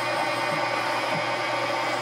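A CNC-controlled metal lathe running steadily while its threading tool cuts a 5/8 fine thread into an aluminium valve stem.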